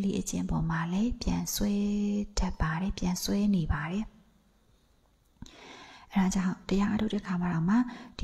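A woman giving a spoken talk in Burmese into a microphone, with a pause of about two seconds midway.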